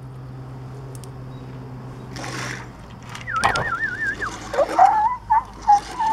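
A mouth-made police siren imitation: a high whistled warble rising and falling rapidly for about a second, then lower wavering siren-like tones.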